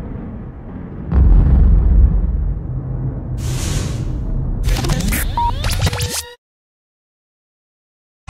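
Cinematic title sound effects: a deep boom about a second in over a low rumble, a whoosh near the middle, then a burst of glitchy, sweeping noise that cuts off suddenly.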